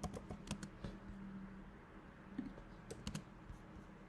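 Computer keyboard keys being typed, a few faint scattered key clicks with a cluster near the start and another around three seconds in, over a faint low hum.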